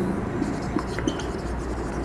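Marker pen writing on a whiteboard: soft scratching strokes as a word is written out.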